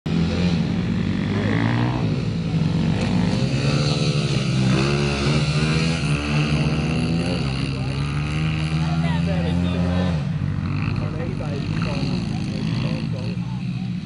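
Small dirt bike engine running and revving, its pitch rising and falling as the throttle is opened and closed, easing off somewhat after about ten seconds.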